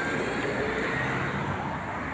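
Steady outdoor background noise of road traffic, an even hiss and rumble.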